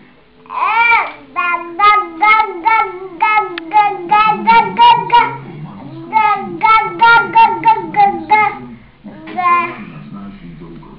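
Toddler babbling in a long run of short, high-pitched, sing-song syllables, about two or three a second, with a brief pause and then one more near the end.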